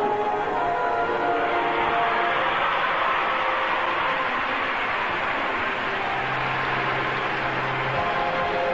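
Figure-skating program music in an arena, nearly covered by crowd applause and cheering that builds about a second in and holds. A steady low note in the music comes in near the end.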